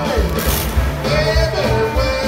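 Blues band playing rock-and-roll style music with a steady beat, a lead line sliding between notes over it.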